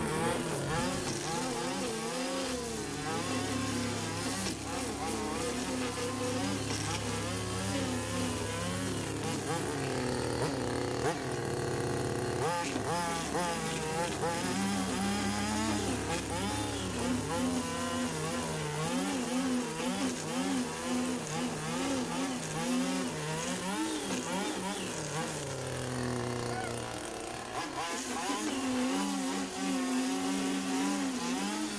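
Petrol string trimmer running, its engine pitch rising and falling every second or so as the throttle is worked, while the spinning line cuts grass.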